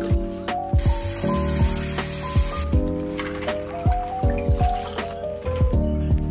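Background music with a steady beat throughout; about a second in, water splashes and pours for about two seconds as vegetables are lifted from a bowl of rinsing water.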